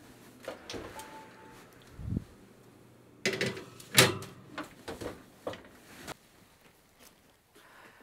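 Oven door swinging open, then a metal baking sheet clattering against the oven rack and being set down: a low thud, two sharp metallic clanks, then a few lighter knocks.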